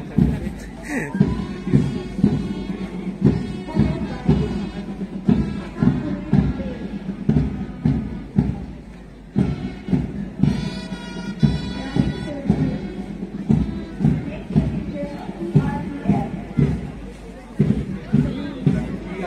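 Marching band music for a march-past, a bass drum keeping a steady beat of about two a second under pipes or brass.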